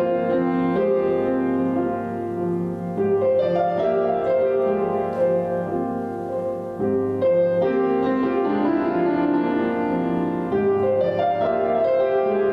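Grand piano playing a slow, sustained passage of chords, with new chords struck every second or few seconds and left to ring.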